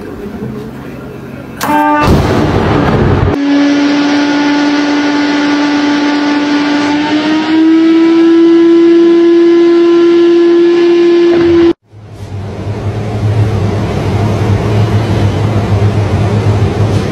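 Shop vacuum motor whining steadily, its pitch stepping up midway as a banana is drawn into the hose and chokes the airflow; it cuts off suddenly. A short noisy stretch comes before it, and a steady low hum with hiss follows.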